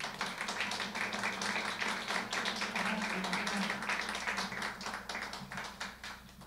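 A small audience applauding, the clapping thinning out and dying away near the end.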